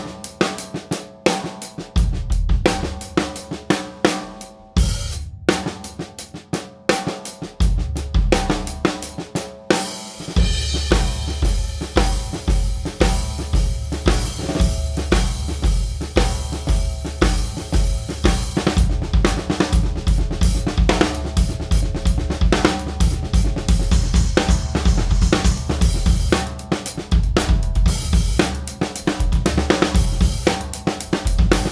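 TAMA Superstar Classic maple-shell drum kit played in a groove: kick, snare, toms and Meinl cymbals. The first ten seconds or so have sparser strokes, then the beat fills out into a busy, steady groove under continuous cymbal wash.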